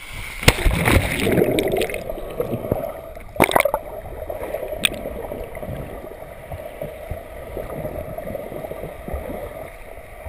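Splash and churning water as the camera plunges under the sea surface, loudest in the first two seconds, then the muffled gurgle and rush of water heard underwater. A sharp knock comes about three and a half seconds in.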